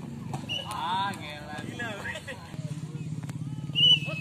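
Players and spectators shouting and calling during a volleyball rally, with a few sharp ball hits and a steady low hum underneath. A brief shrill tone near the end is the loudest moment.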